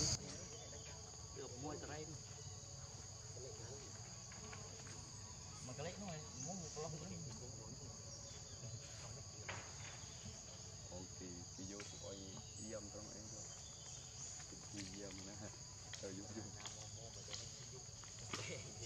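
Steady, high-pitched insect chorus. Faint, short sounds that bend in pitch come and go every few seconds beneath it.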